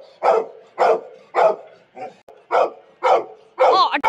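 A dog barking over and over at a steady pace, about two barks a second.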